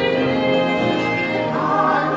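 A singing server's voice performing a Broadway-style song over backing music, holding one long note that shifts to a new pitch about one and a half seconds in.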